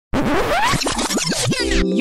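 Intro music opening with turntable-style record scratching: a run of quick pitch sweeps up and down over a noisy rush for about a second and a half. Near the end the scratching cuts off and a sustained chord comes in.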